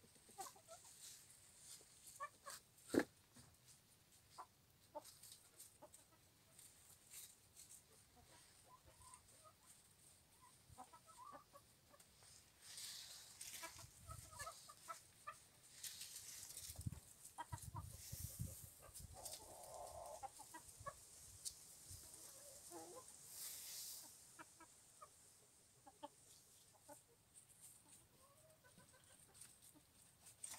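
Silkie hens clucking softly now and then while foraging, with faint rustling in dry leaves through the middle stretch and one sharp tap about three seconds in.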